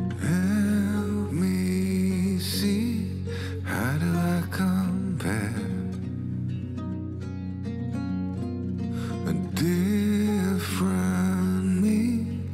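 Background music: a slow piece with a melody that slides and wavers in pitch, played over plucked strings and a steady low bass note.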